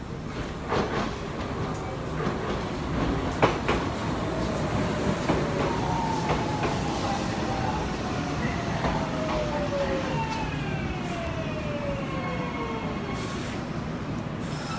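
Kintetsu electric commuter train pulling into the platform and braking to a stop: wheels clack over rail joints in the first few seconds, then the motors whine, falling steadily in pitch as it slows, over a steady running rumble.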